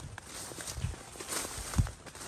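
Footsteps through tall grass and weeds: three steps, the last the loudest, with leaves and stems rustling against the walker.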